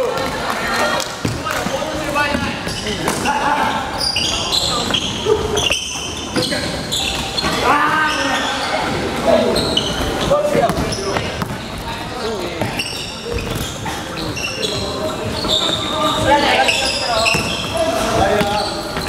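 Indoor basketball play on a wooden court: a basketball bouncing off the floor, sneakers squeaking in short, high chirps, and players calling out, all echoing in a large gym hall.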